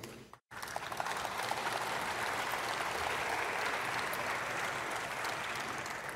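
Applause from a seated audience of legislators. It starts about half a second in after a brief gap and holds steady.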